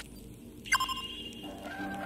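Electronic logo-sting sound effects: a sharp synthetic hit with a ringing chime-like tone and a short falling pitch about two-thirds of a second in, then soft held synth notes.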